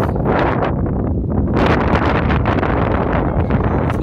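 Strong wind blowing across the microphone, a loud, steady rumble of wind noise.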